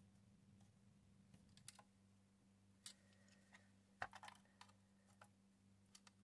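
Faint, scattered small clicks and taps of a thin metal pick and fingers working at the pins of a gauge stepper motor on an instrument cluster's plastic circuit board, over a low steady hum.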